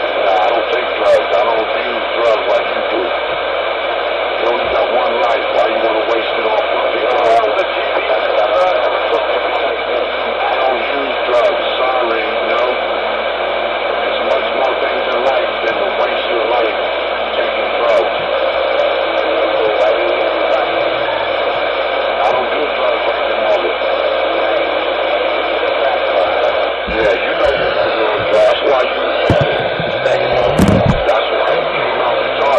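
Ranger CB radio's speaker playing a continuous, garbled transmission: distorted, hard-to-make-out voices with steady whistling tones running through it, all with a thin, narrow radio sound.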